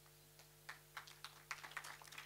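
Near silence in the speaker's pause: a steady low electrical hum from the sound system, with a few faint irregular clicks from about half a second in.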